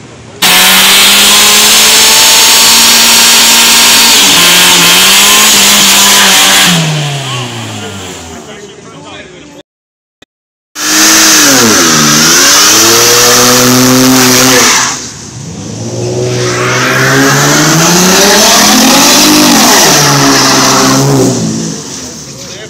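A car engine held at high revs for several seconds, then falling away. After a sudden break, a Mercedes-Benz C-Class coupe's engine revs up and down over and over as it does a burnout, wheels spinning.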